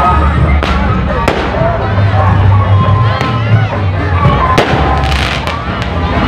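Loud street-procession din: booming bass-heavy music from a truck-mounted sound system over crowd voices, broken by sharp firecracker cracks that come about a second apart at first and bunch together around five seconds in.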